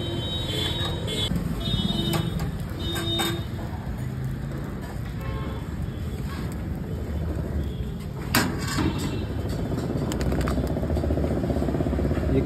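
Street traffic running steadily in the background, with a couple of short horn toots in the first few seconds and a single sharp clack a little past the middle.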